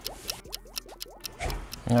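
Sulfuric acid draining from an inverted acid pack into the cells of a Yuasa YTX12-BS AGM motorcycle battery, gurgling as air bubbles up into the emptying container: a quick run of small rising gurgles and faint ticks in the first second or so.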